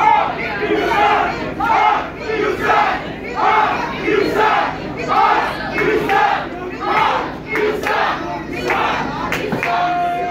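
Wrestling crowd chanting in unison, a steady rhythm of shouted syllables about twice a second, with a few sharp knocks near the end.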